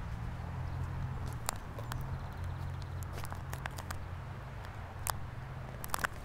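Footsteps on an asphalt parking lot, a few irregular steps, over a steady low rumble.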